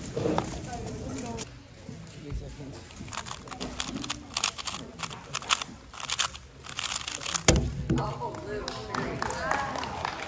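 Quick run of sharp plastic clicks from a speed cube's layers being turned during a sub-5-second 3x3 Rubik's Cube solve, ending with a thump about seven and a half seconds in as the solve is stopped on the stackmat. Voices chatter in the background.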